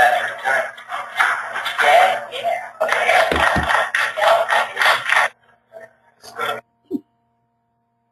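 Voices with music from a documentary video played through a webinar screen-share. The sound stops about five seconds in, and the rest is near quiet with a few faint short sounds.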